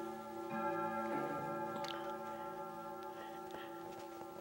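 Grandfather clock chiming: bell-like notes struck in the first second or so, then ringing on and slowly fading.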